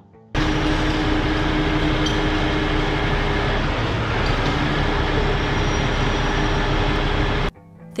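Heavy rotator tow truck's diesel engine running steadily under load while lifting a trash truck's box, a dense, even machine noise with a low steady hum. It starts about half a second in and cuts off suddenly near the end.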